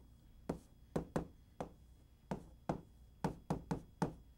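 Chalk striking and tapping on a chalkboard while writing: a quick, irregular series of about a dozen sharp taps that come closer together in the second half.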